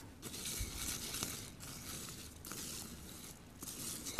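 Faint, uneven scraping and rustling of a utensil stirring uncooked rice and melted butter in a glass bowl, with a few light ticks against the glass.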